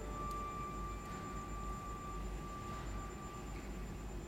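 A single soft, high note held on a bowed string instrument, a pure steady tone without vibrato, fading out near the end, over low room hum.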